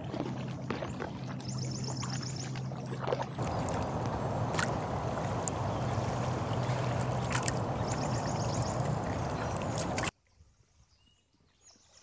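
Double-bladed paddle stroking through calm river water, with water swishing along the hull of a small coroplast sit-on-top kayak. A steadier rushing noise takes over about three seconds in, and the sound cuts off abruptly about ten seconds in.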